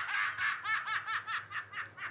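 A person laughing in a rapid run of short, high-pitched bursts, about seven a second, growing weaker toward the end.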